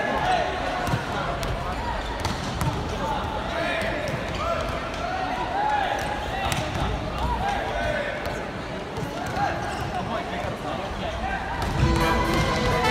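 Volleyball rally in a gym: the ball is struck several times in sharp slaps, with players and spectators shouting and calling.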